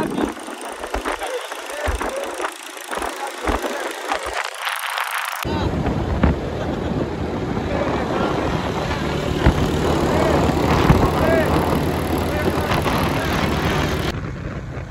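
Scattered clicks and knocks with people's voices in the background, then, after an abrupt change about five seconds in, a steady vehicle engine running with wind rushing over the microphone.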